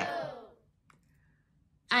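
A woman's voice trailing off and fading out in the first half second, then near silence with one faint click, until she starts speaking again at the very end.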